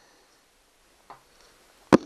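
Steel steering-link rod and its fittings knocking against the outboard motor's steering bracket as the link is fitted: a faint click about a second in, then one sharp, loud click near the end.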